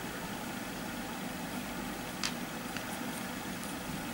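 Steady low background hum, with one faint click about two seconds in.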